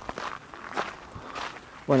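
Footsteps of a person walking on a dirt path, a few soft steps.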